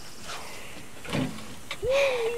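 Batter sizzling faintly on the hot steel plate of a Blackstone propane flat-top griddle as a batch of pancakes cooks. There is a short burst about a second in, and a voice starts just before the end.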